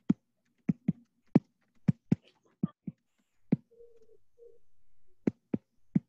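A voice on a video call broken into short, stuttering blips with silent gaps between them: the audio is dropping out over an unstable internet connection.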